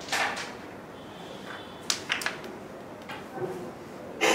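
Carrom striker flicked into the coins about two seconds in: one sharp clack followed quickly by two more clicks as the wooden pieces strike each other and the rails. Softer knocks follow about a second later.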